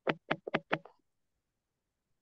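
A rapid run of about five sharp knocks in the first second.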